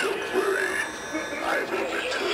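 A voice with slow, sliding pitch and no clear words.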